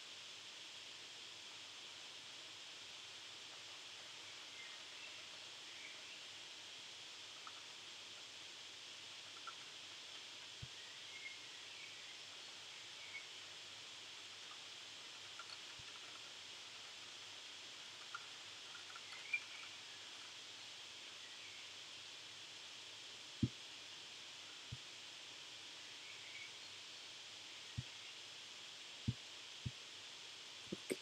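Faint steady hiss with a handful of sharp single clicks in the second half, from clicking the computer's pointer button to step through code in a debugger.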